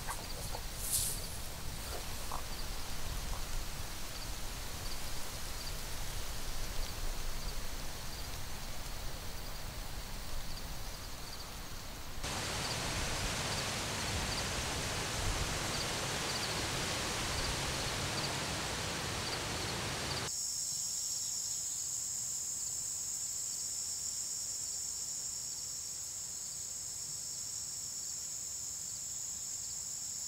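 Outdoor field ambience built in sections: an even rush of wind with faint, regular high insect ticks, turning louder and fuller about twelve seconds in. About twenty seconds in it cuts abruptly to a steady, high-pitched drone of an insect chorus.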